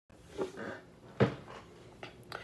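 Handling noise as the recording device is set in place: two dull knocks, a small one early and a louder one a little past a second in.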